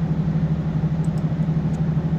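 Steady low machinery drone with a fast, even flutter, from running plant equipment.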